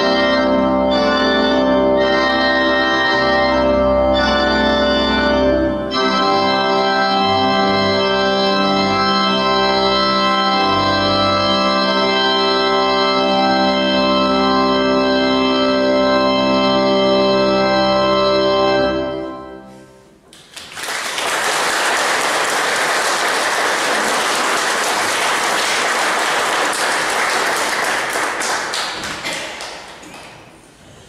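Organ playing the close of a piece, ending on a long held chord that cuts off about two-thirds of the way through. After a brief gap an audience applauds, the clapping fading out near the end.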